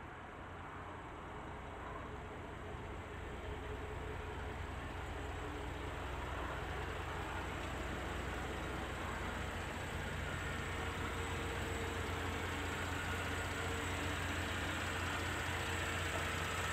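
2016 Chevrolet Traverse's 3.6L V6 engine idling, a steady low hum that fades in and grows slowly louder.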